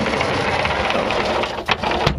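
Plywood generator tray sliding along its metal tracks: a steady scraping rumble that ends in a sharp knock near the end as it stops.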